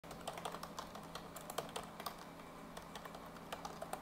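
Typing on a computer keyboard: quick runs of key clicks, with a short pause a little past halfway, over the faint steady hum of a fan.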